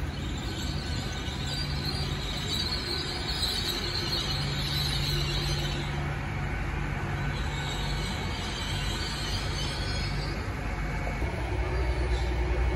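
GWR Hitachi Intercity Express Train rolling slowly through the station, its engines giving a low steady hum. A high squeal from the wheels on the rails swells and fades twice.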